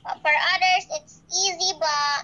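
A child singing in short, high-pitched phrases with sliding pitch, four of them in quick succession.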